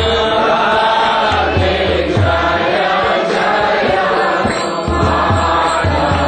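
A devotional mantra being chanted to music, with low accompaniment beating under the voices.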